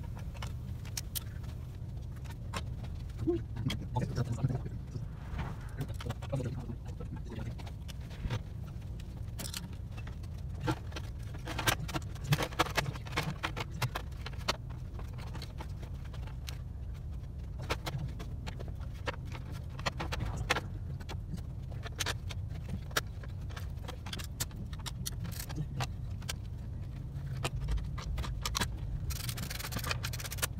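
Scattered clicks and light clatter of hand tools and cooling-system parts being handled in a car's engine bay, busiest in two spells in the first half, over a steady low hum.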